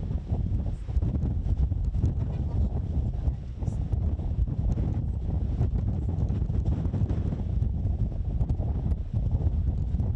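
Wind buffeting a microphone: a gusty low rumble that rises and falls unevenly.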